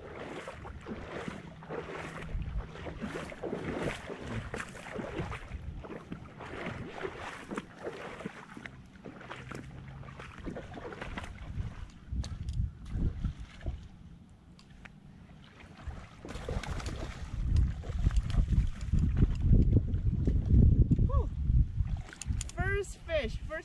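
Shallow river water splashing in a rough, repeated rhythm for the first dozen seconds. From about two-thirds of the way in, a loud low rumble of wind buffets the microphone.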